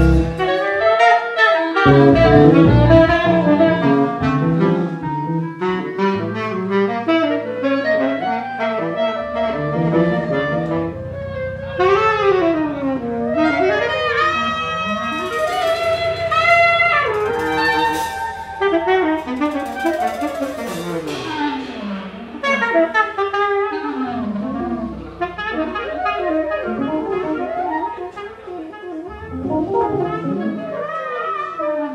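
Live band music: a clarinet and a saxophone play winding melodic lines, rising and falling, over long held bass notes. A loud full-band passage breaks off right at the start.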